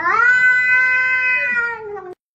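Domestic cat giving one long, loud meow that rises at the start, holds a steady pitch and drops slightly at the end.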